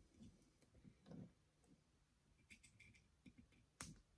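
Near silence with a few faint, scattered clicks and one sharper click near the end: small scissors snipping at the insulation over the wiring on a model locomotive's motor.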